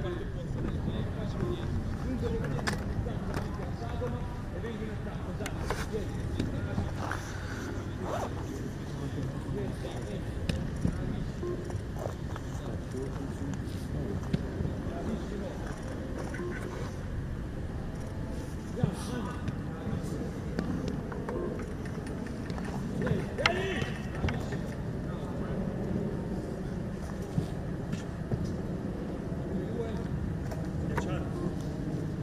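Footballs being struck and saved in a goalkeeper drill: about ten sharp thuds of kicks and ball-on-glove impacts, a few seconds apart. Under them are a steady low outdoor rumble and faint voices.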